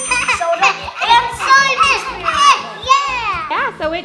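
Children's high-pitched voices over background music with a steady beat.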